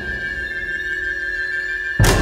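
Background music: a single high note held steadily, with softer held notes beneath it.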